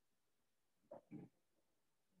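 Near silence, broken about a second in by two faint, brief voice-like sounds in quick succession, as from a distant person off the microphone.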